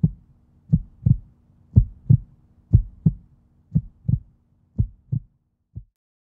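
A heartbeat-style sound effect: low double thumps, lub-dub, about once a second over a steady low hum. The hum fades out near the end, and a last single thump follows.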